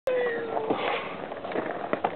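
A cat meowing once, a drawn-out call of under a second that falls slightly in pitch, followed by a few light clicks.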